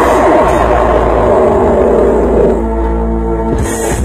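Loud electronic dance music played live over a big aparelhagem party sound system, with heavy, steady bass. About two and a half seconds in, the busy pulsing part gives way to a held synth chord.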